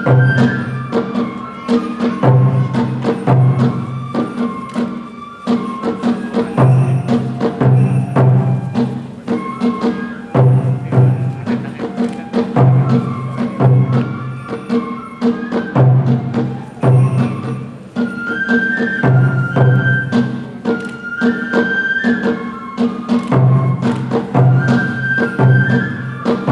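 Japanese kagura accompaniment: a bamboo flute playing a melody with long held notes over taiko drum beats in repeating groups, with sharp clacking percussion strikes throughout.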